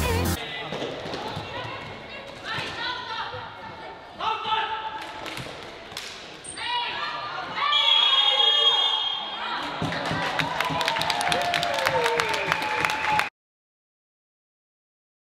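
Live floorball game sound in an indoor hall: players and spectators shouting, loudest partway through, with sharp clacks of plastic sticks and ball that come thick and fast near the end. A moment of background music ends just as it begins, and the sound cuts off abruptly shortly before the end.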